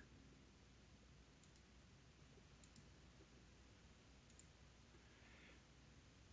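Near silence: faint room tone with a few very faint computer-mouse clicks, about three spread through it.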